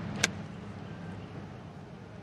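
Golf club striking the ball once, a sharp click about a quarter second in, with a steady low background hum.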